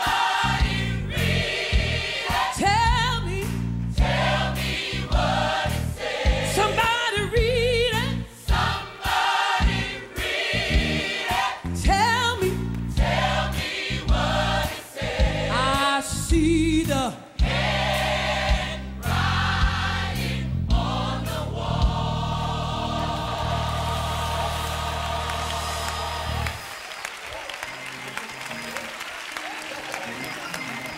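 Live gospel choir singing with band backing, in punchy stop-start hits, building to a long held final chord that cuts off about four fifths of the way through. Audience applause follows.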